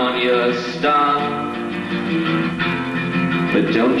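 Acoustic guitar strummed live, with a man singing over it into the microphone.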